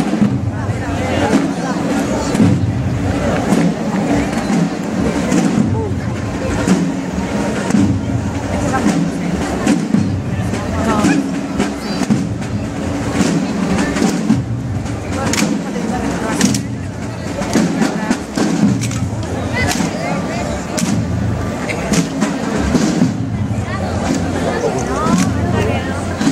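Soldiers' rifle drill: repeated sharp clacks and slaps of rifles being swung and handled and boots striking the pavement, over a steady murmur of crowd chatter.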